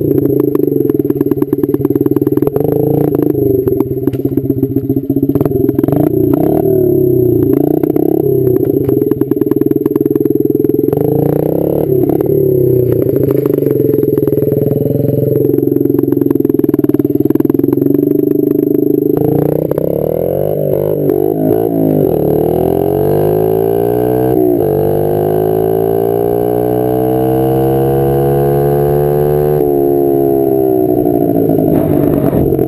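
Honda CRF50F's small air-cooled single-cylinder four-stroke engine running under way, fairly steady with frequent short clicks over it for most of the first two-thirds. In the last third its pitch sweeps up and down repeatedly as the revs rise and fall.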